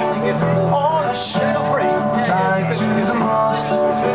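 Live acoustic guitar strummed and played through a stage PA, with a man singing along into the microphone.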